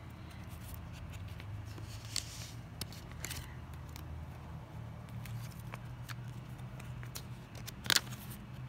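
Pokémon trading cards being handled and slid into plastic card sleeves: light scattered rustles and small taps over a steady low hum, with one sharp snap just before the end.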